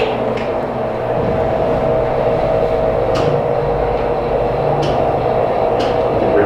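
Steady machine hum with a few steady tones in it, broken by about four short clicks.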